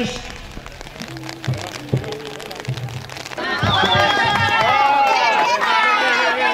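Spectators and children shouting and cheering along a race course. The cheering starts suddenly about three and a half seconds in, after a quieter stretch with a few knocks.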